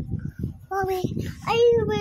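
A young boy singing two drawn-out wordless notes, the second higher and longer, while the phone's microphone picks up a steady rumble of rubbing and bumping as the phone is handled.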